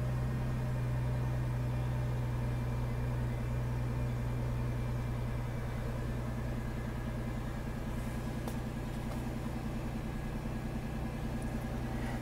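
A cargo van's engine idling steadily, a low even hum.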